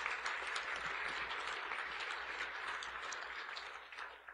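Audience applause: many hands clapping steadily, thinning slightly toward the end.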